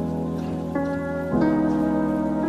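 Instrumental passage of a soul/R&B track: held chords over a steady bass, with the chord changing about three-quarters of a second in and again just past halfway.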